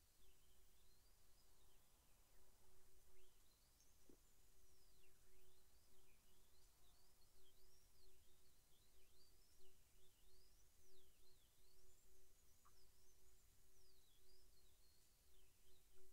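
Near silence: room tone with faint distant birdsong, thin high whistles rising and falling, over a faint steady low hum.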